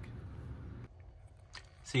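Quiet room noise with a single faint click about a second and a half in.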